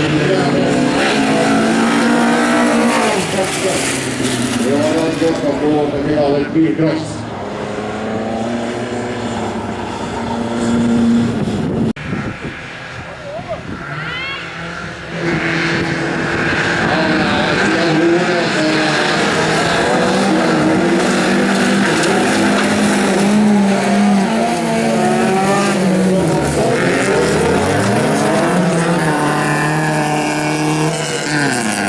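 Bilcross race car engines revving hard, their pitch climbing and dropping with throttle and gear changes. About halfway through the sound cuts off abruptly and stays quieter for a few seconds. After that comes a bank of engines revving together, held high and fairly steady.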